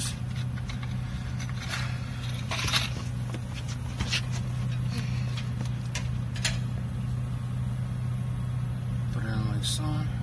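A steady low hum like an idling engine, with a few light clicks and rustles of a small metal-and-plastic crimp ring terminal being handled on a wire.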